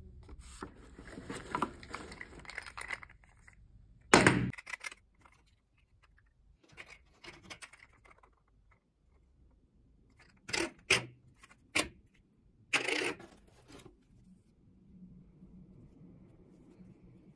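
Hands handling and unpacking a gift box: card vouchers rustle and slide for the first few seconds, then a loud knock just after four seconds. Around eleven seconds there are three sharp taps as small pattern weights are set down, followed by a short scraping rustle.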